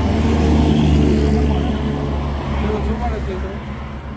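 A bus driving past on the road, its engine drone swelling to a peak about a second in and then fading as it moves away.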